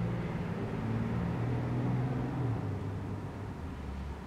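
A low mechanical rumble and hum, swelling toward the middle and easing off near the end.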